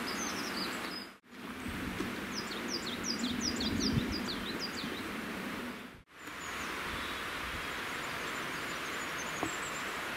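Outdoor ambience with a steady background hiss, over which a small songbird sings a fast run of short descending notes between about two and five seconds in. The sound drops out briefly twice, at edits.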